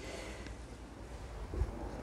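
Faint background noise: a steady low rumble and light hiss, with a soft low bump about a second and a half in.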